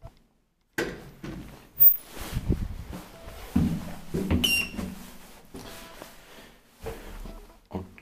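Valmet Otis lift's manual swing landing door opening and closing with sharp clicks and thumps, the loudest about two seconds in, and footsteps into the car. A short beep about four and a half seconds in as a floor button is pressed.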